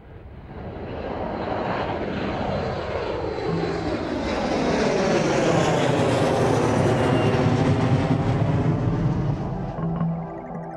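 Boeing 747 jet airliner taking off and passing low overhead. The engine roar builds from faint over the first couple of seconds and then holds loud, with a steady low drone joining in a few seconds in and a sweeping, phasing whoosh as the aircraft goes over.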